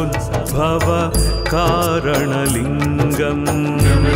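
Hindu devotional music: a wavering, ornamented melody line over a steady low drone, with light percussion strikes.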